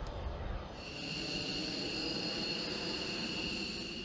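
F-15 fighter jet's engines running at low power: a steady low rumble, with a high-pitched turbine whine setting in about a second in.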